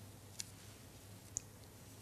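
Quiet room tone with a faint low hum and two small faint clicks, one near the start and one past the middle.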